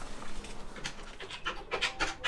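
Quick run of short rustles and clicks from handling papers and a corded desk telephone, starting about a second in at roughly five a second.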